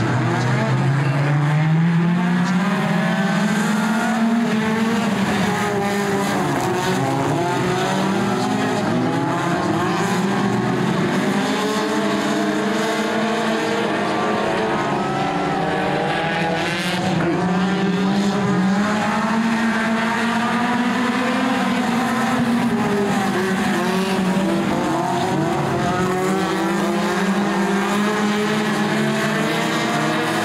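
A pack of four-cylinder dirt track race cars running hard together, their engine notes overlapping and rising and falling in pitch as they accelerate down the straights and lift for the turns.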